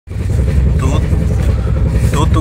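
Steady low rumble of a moving passenger train, heard from inside the coach, with a brief faint voice about a second in.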